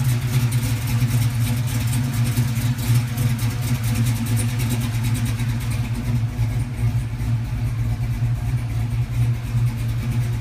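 LS-swapped V8 in a GM G-body car idling steadily, its exhaust run through an X-pipe, with an even low pulsing.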